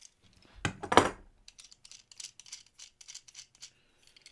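Small metal screw clamps clinking and rattling against each other as they are handled and opened up: one loud clack about a second in, then a run of light metallic ticks.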